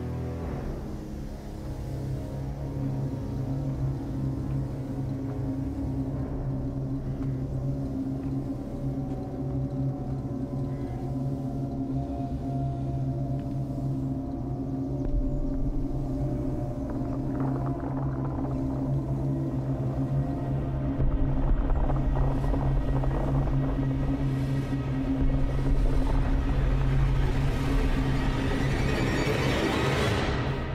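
Suspenseful film score of sustained low tones that swells gradually louder, with a deep rumble joining in from about halfway through.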